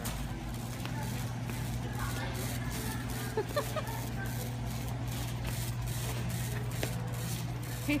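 Warehouse-store ambience: a steady low hum with faint, distant voices, and light clicks and rattles from a wire shopping cart being pushed across the concrete floor.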